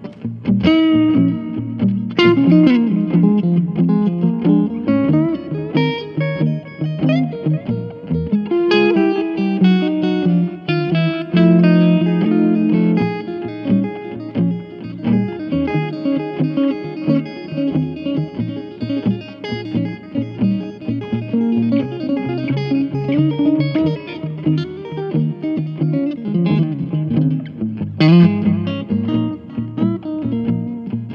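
Electric guitar: a 2012 Fender Classic Player '50s Stratocaster played through a Fender Vibroverb amp. It plays a run of single-note lines and chords, with notes bent and slid in pitch.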